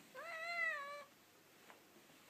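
A cat meowing once: a single call of about a second that rises and then slowly falls in pitch.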